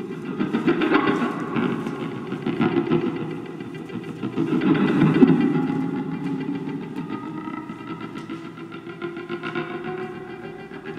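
Improvised guitar played through effects: a dense, rough low-to-mid texture that swells and ebbs, loudest about five seconds in, thinning after that to a few held tones.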